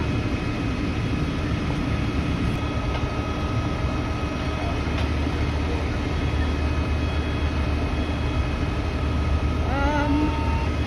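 Steady mechanical drone of running engines: an idling fire ladder truck close by, together with the ventilation fans run into the house, a low hum with faint steady whine tones over it.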